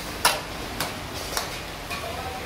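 Steel ladle knocking against a steel karahi wok, four sharp metallic clicks about half a second apart, the first the loudest.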